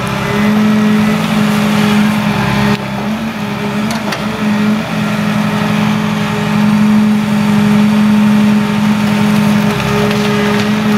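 Ecolog 574E forwarder's diesel engine running steadily under the load of its hydraulic crane, a strong low hum that wavers briefly near the middle. A few faint clicks come about four seconds in.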